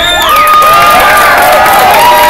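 Crowd cheering with long, high shouts and hand clapping, getting louder about half a second in.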